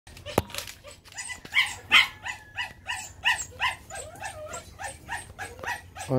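Phu Quoc Ridgeback puppies yapping over and over in short, high yips, about two or three a second. A single sharp click sounds a fraction of a second in.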